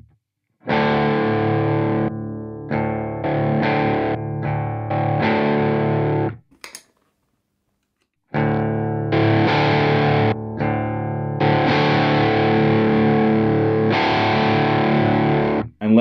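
Electric guitar played through a JHS Morning Glory V4 overdrive into a clean amp channel with the amp's boost off, giving a lightly driven tone. There are two strummed passages with a short silent gap between them, and the pedal's setting is changed in the gap.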